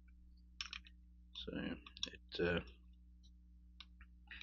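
Light metallic clicks of a disassembled Grand Power K100 pistol's steel parts being handled: the barrel and slide tapping against each other and the frame. There is a small cluster of clicks about half a second in, another click around two seconds, and a few faint ticks near the end.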